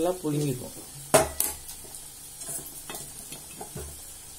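A spatula stirring thick ragi (finger millet) dough in a steel pot, with a few sharp knocks of the spatula against the pot; the loudest knock comes just after a second in, with smaller ones near the end.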